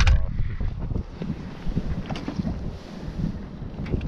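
Wind buffeting the microphone, a steady low rumble, with a sharp knock at the start and a few fainter clicks and taps of handling later on.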